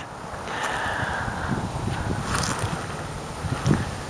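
Wind rumbling unevenly on the microphone, with a couple of faint rustles.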